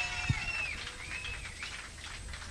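A lull between songs in a live punk show recording: a few high whistle-like tones rise and fall in the first second and a half over low room rumble, with one short thump about a third of a second in.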